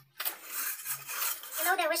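Metal plastering tools scraping and clinking against a freshly cement-rendered block wall. A voice starts near the end.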